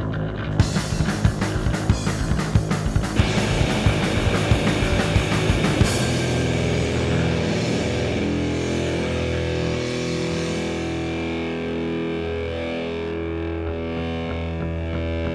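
Instrumental rock music on guitar: fast rhythmic strummed strokes for about six seconds, then sustained held notes that change pitch every second or so.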